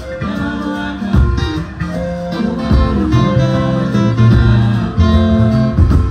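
Live maskandi band music led by a picked acoustic guitar, over low, steady bass notes.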